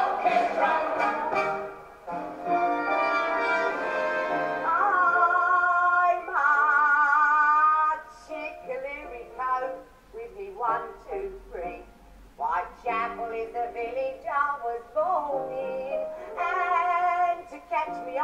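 A woman singing a music-hall song in a trained, operatic voice with vibrato. She holds long notes through the first half, then breaks into shorter phrases.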